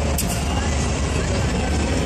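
Steady low hum and rumble of a large hall's room noise, with faint voices mixed in.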